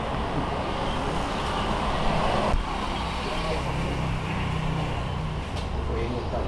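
Road traffic going by: a steady rushing noise that drops off about two and a half seconds in, followed by a low engine hum, with faint talk underneath.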